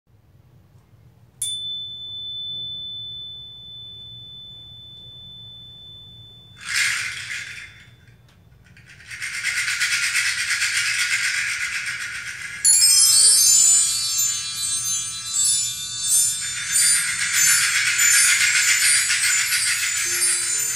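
Percussion music played back over a hi-fi system through Monitor Audio Studio 2 speakers and heard in the room. A single struck bell-like tone rings on from about a second in, a short rattle comes near seven seconds, and then a steady shaker. A cluster of high chimes enters suddenly just past the middle.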